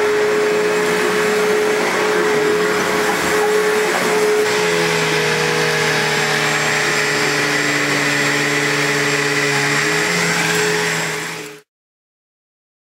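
Vacuum cleaner running steadily with a loud whine, its hum changing note about four and a half seconds in. It cuts off abruptly near the end.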